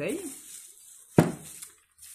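A glass bottle knocking once on a hard surface: a single sharp clink a little over a second in.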